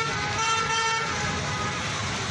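A vehicle horn honks in a long steady tone with a short break near the start, stopping about a second and a half in, over the steady noise of street traffic.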